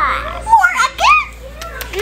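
A young child's high-pitched playful squeals and vocal sounds: several short calls, each rising and falling in pitch, with no words.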